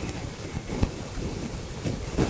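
Low background noise picked up by a stage microphone during a pause in Quran recitation: a steady hiss and rumble with a few faint clicks, and no voice.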